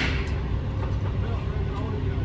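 Sanitation truck's diesel engine idling steadily with a low rumble, with one sharp clack right at the start.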